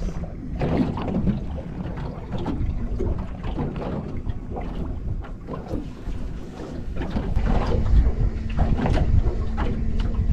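Wind buffeting the microphone, with water slapping and lapping against the hull of a small boat.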